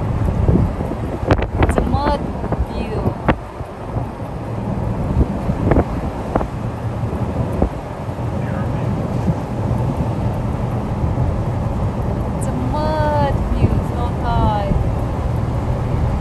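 Steady low road and engine rumble of a car being driven, with wind noise. A few clicks come early on, and a cluster of short high descending cries comes near the end.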